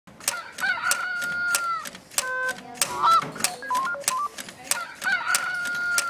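Homemade LEGO and PicoCricket sound machine running. The motor-driven lever clacks against the plastic bricks several times a second, while the electronic sound box plays tones: a long held note, a shorter note, a quick run of rising beeps, then another long held note.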